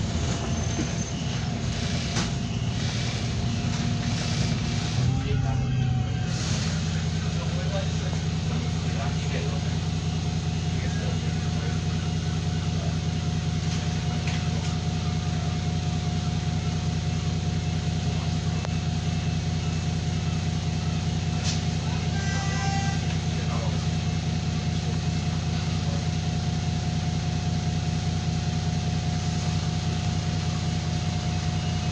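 Bus engine heard from inside the saloon, labouring and changing over the first few seconds as the bus slows and stops, then idling steadily with a thin constant whine.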